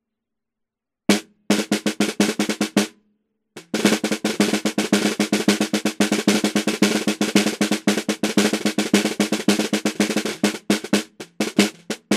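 Snare drum played and heard from underneath through an Akai ADM 40 dynamic microphone about 3 cm below the bottom head, aimed at the snare wires near the middle. A single hit about a second in is followed by a quick run of strokes, a short pause, and a long fast roll from about four seconds in. Scattered hits come near the end.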